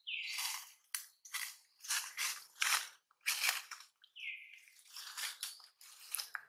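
Monkey eating, a string of short crisp crunches and smacks as it chews, with two short falling whistle-like chirps, one at the start and one about four seconds in.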